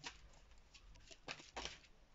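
A deck of oracle cards being shuffled by hand, heard faintly as a few soft card flicks and rustles.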